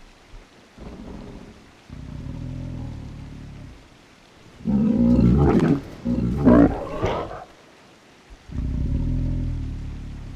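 Sound effect of a pig-like mutant creature: low growls, then two loud, harsher cries about halfway through, each about a second long.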